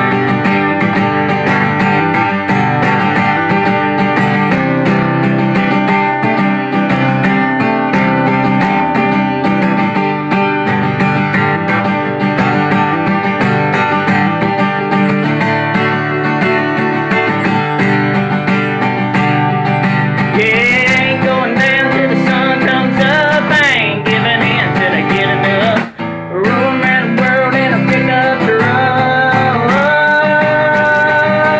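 Acoustic guitar strummed steadily through an instrumental break of a country song. About twenty seconds in, a voice joins with wordless notes that slide in pitch. A few seconds before the end the sound cuts out briefly.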